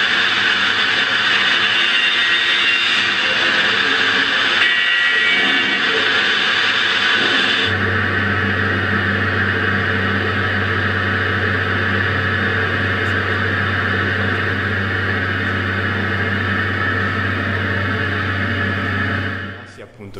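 Dense ambient sound from a film soundtrack, with no dialogue: a loud steady wash of noise, joined about eight seconds in by a low steady hum as the highest part of the noise drops away. It fades out near the end.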